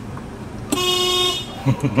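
Car horn sounded once, a single steady tone lasting about two-thirds of a second, starting just under a second in, over the low hum of the car running.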